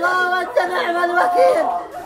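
A woman crying out in grief, her high-pitched voice wailing in long drawn-out cries that rise and fall.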